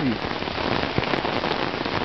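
Heavy rain falling steadily on pavement and street, a dense, even hiss.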